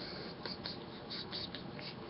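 Several faint, short scratching sounds in quick succession, over a low steady room hiss.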